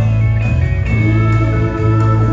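Live band music with guitar to the fore, playing long held notes over a steady bass.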